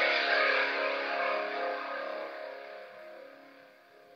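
Final chord of a rock song ringing out on distorted electric guitar and fading away steadily over a few seconds.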